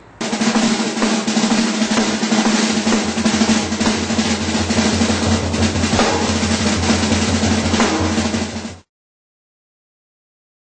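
A drum kit played in a fast, continuous roll on snare and cymbals, loud and unbroken for about eight and a half seconds, then cutting off suddenly.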